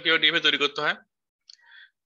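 A man's voice speaking for about a second, then a pause.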